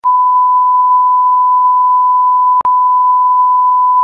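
A loud, steady censor bleep, one pure high tone, laid over the phone number being dictated to hide it. A short click and dip breaks it about two and a half seconds in, where two bleeps are joined.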